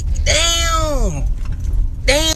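A man's voice drawing out one long word, its pitch falling away at the end, over a steady low rumble.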